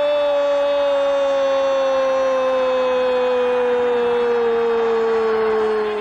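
A male football commentator's drawn-out goal call, 'Gol', held as one long loud note that slowly falls in pitch and begins to fade near the end.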